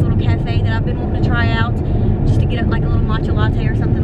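A woman talking inside a moving car, over steady road and engine rumble in the cabin.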